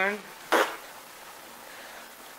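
The end of a drawn-out voice, then a short breathy burst about half a second in, then quiet room tone.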